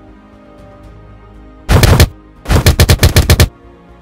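Hook-and-loop wrist strap of an MMA glove ripped loud: one short rip, then a second rip that goes in about nine quick pulses. Soft background music plays under it.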